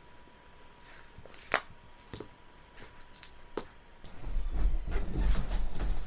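Six-sided dice being rolled on a table: a few separate sharp clicks spread over several seconds, followed near the end by low rumbling handling noise.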